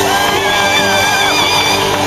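Live pop-rock band playing loud through a PA, with a high, wavering held note standing out over the band for about the first second and a half.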